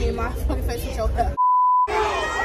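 Voices talking, cut off about a second and a half in by a steady single-pitch beep lasting about half a second, with all other sound muted under it: a censor bleep edited into the soundtrack.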